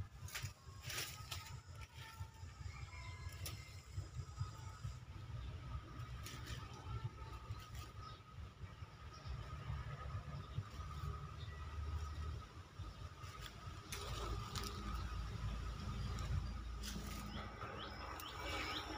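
Faint clicks and rattles of a wire-mesh cage trap being handled and pushed shut, over a low rumble.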